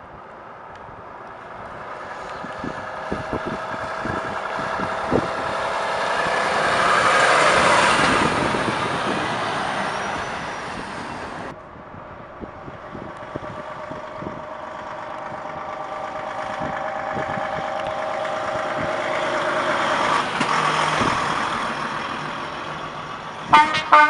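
Heavy diesel truck tractor units driving past one after another, first a Volvo FH, then a DAF XF, each with a steady engine note that swells as it nears and then fades. Near the end comes a quick burst of short, loud blasts.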